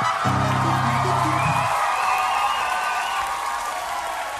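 A live punk rock band winding down a song: a low note is held for about a second and a half, then higher ringing tones hang on and slowly fade.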